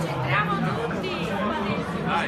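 Many people talking at once: overlapping crowd chatter with no single voice standing out.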